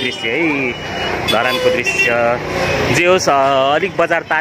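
Busy market-street sound: several voices of passers-by, one drawn out for most of a second near the end, over the low running of a small motor vehicle passing close by.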